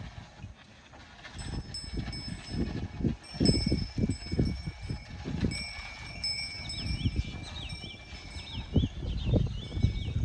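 Irregular low rumbling of wind on the microphone, with steady bell-like ringing tones coming and going above it. In the last few seconds a bird chirps several times in quick succession.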